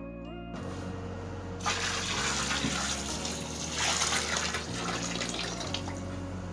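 Water pouring and splashing into a bathtub full of soaking sticks. It starts softly and grows loud about a second and a half in, then eases off near the end.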